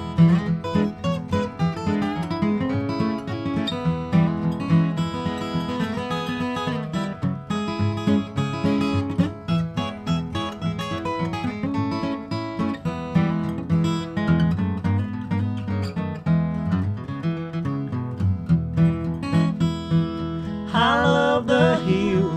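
Instrumental break in a bluegrass duet played on two acoustic guitars: a flatpicked lead melody over strummed rhythm. Singing comes back in near the end.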